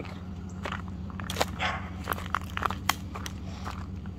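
Footsteps crunching irregularly over dry leaves and gravel, over the steady low hum of a Ford Ranger pickup idling.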